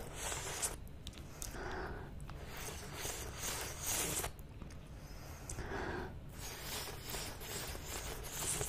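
Wet licking and sucking mouth sounds on two twist-pop lollipops held together, picked up close to the microphone. They come in about five bursts with short pauses between.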